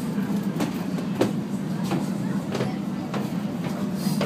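Steady low rumble inside a double-deck Eurotunnel Le Shuttle car-carrier wagon, with light regular footsteps about one and a half a second going down the stairs to the lower deck.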